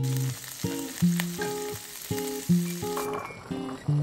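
Diced smoked duck breast sizzling as it fries in oil in a pan, a dense steady hiss; about three seconds in the sizzle gives way to a quieter sound. Plucked guitar music plays over it.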